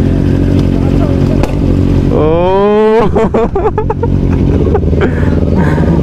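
Motorcycle engines idling steadily, with a brief rising tone about two seconds in.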